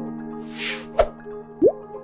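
Intro music under animated titles: a held chord with a soft whoosh about half a second in, a sharp click at one second, and a quick rising-pitch pop near the end.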